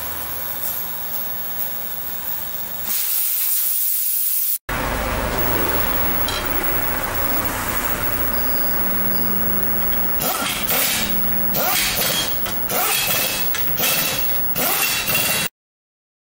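Tyre-workshop machinery: a steady mechanical hum, then from about ten seconds in, a run of short irregular bursts of hissing and rattling from air tools.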